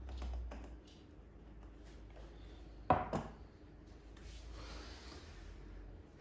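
Beer poured from a can into a glass, with a few soft taps. About three seconds in comes one sharp knock as the glass is set down on a wooden chopping board, followed by a faint hiss.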